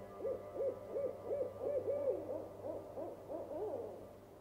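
An owl hooting: a quick series of about a dozen short hoots, roughly three a second, each rising and falling in pitch, over a steady ambient music drone.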